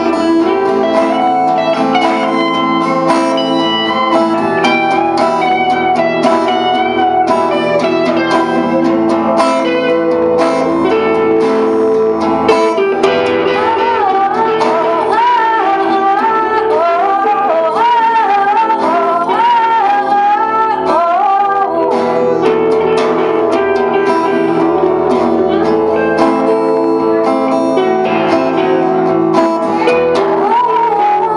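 An acoustic and an electric guitar playing a slow blues arrangement together. About halfway through, a high lead melody of bent, wavering notes rises above them for several seconds.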